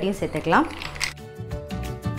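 A voice for the first half-second or so, then instrumental background music with a steady beat.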